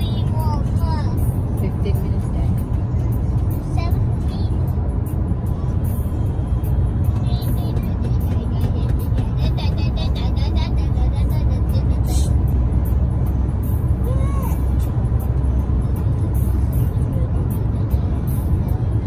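Steady low road and tyre rumble of a car cruising at highway speed, heard inside the cabin, with music and faint voices over it.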